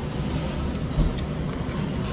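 Steady low background rumble, with a soft knock about a second in.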